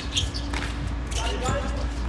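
Tennis ball struck by rackets and bouncing on a hard court during a doubles rally: a few sharp pops spread through the moment, with a short call from a player about a second in.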